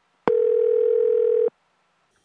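Telephone ringback tone of an outgoing call: one steady mid-pitched beep, starting sharply about a quarter second in and lasting just over a second.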